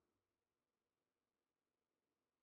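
Near silence: the recording is essentially empty, with no audible sound.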